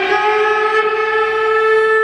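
Music: a single long note held steady, sliding up slightly as it begins.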